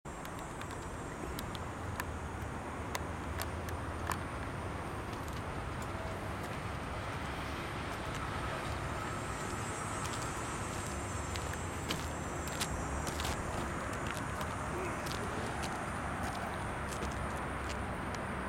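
Steady outdoor background noise, mostly a low rumble, with a few light clicks scattered through it.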